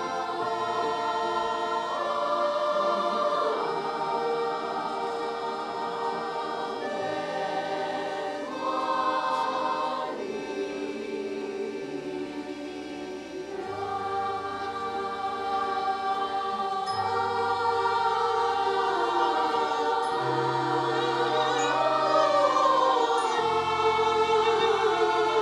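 Children's choir singing in long held chords with an accordion ensemble accompanying, its steady bass notes underneath. The voices swell toward the end, with vibrato on the last held note.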